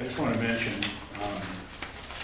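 Brief indistinct speech in a meeting room, with one short sharp click a little under a second in.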